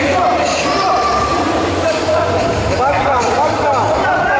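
Many voices of spectators and coaches shouting and talking over one another during a grappling match, with several calls rising and falling in pitch in the second half, over a steady low hum in a large hall.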